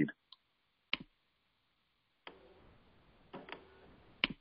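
A quiet pause on a web-conference call line: one sharp click about a second in, then faint, short bursts of background noise with traces of a distant voice in the second half.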